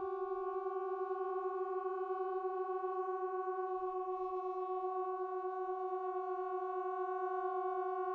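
Multi-tracked trombones holding one long, soft sustained pitch with a slow wavering beat in it.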